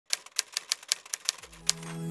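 Typewriter keystroke sound effect: about nine quick, unevenly spaced key clacks as a title is typed on screen, with soft music starting to fade in near the end.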